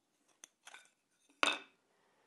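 A hardwood block being handled against the metal fence and top of a table saw: two faint clicks, then a louder wooden knock about one and a half seconds in as the block is set down on the fence.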